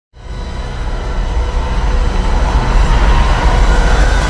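Deep rumbling roar of a TIE fighter engine from the trailer's soundtrack. It swells up over the first two seconds and holds, with steady whining tones over it.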